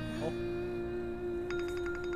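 A held low note of background music. About one and a half seconds in, a mobile phone starts ringing with a rapid, pulsing electronic ringtone.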